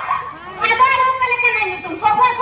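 A stage performer's voice making a long, drawn-out pitched cry, starting about half a second in and held for over a second.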